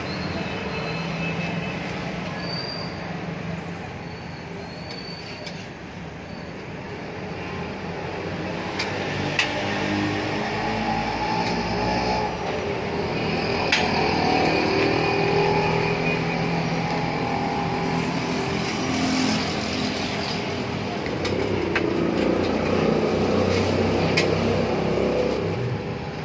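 Steady street traffic noise with engine hum that swells and fades as vehicles pass, and a few sharp clicks of utensils.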